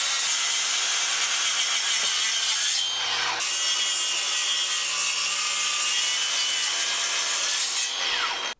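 Bosch track saw cutting through an engineered oak panel along its guide rail: a steady motor whine with the blade biting into the wood, briefly changing about three seconds in.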